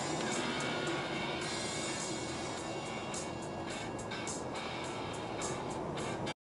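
Music playing on the car radio inside a moving car's cabin, with road and engine noise under it.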